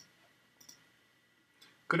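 One faint computer-mouse click about two-thirds of a second in, against near-quiet room tone; a man's voice starts just before the end.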